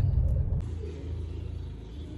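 Low rumble of a car on the move, dropping suddenly about half a second in to a quieter, steady low hum.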